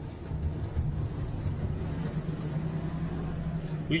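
Steady low drone of a motor vehicle's engine and road noise in street traffic, with no distinct impacts or scraping.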